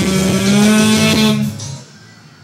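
Karaoke backing music with guitar ending a phrase on a long held note, which cuts off about one and a half seconds in, leaving it much quieter.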